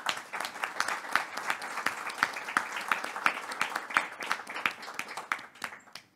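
Audience applauding: many hands clapping densely and steadily, dying away quickly near the end.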